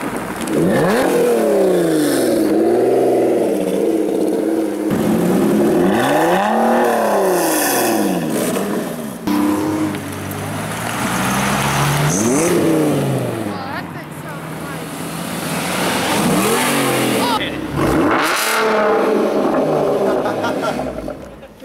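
Several sports-car engines, among them a Lotus Evora and a Dodge Viper GTS, revved one after another in quick cuts. Each rev is a fast climb in pitch that falls straight back, about half a dozen in all.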